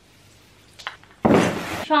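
A faint click, then a loud, short rustle of artificial Christmas tree branches being handled, lasting about half a second.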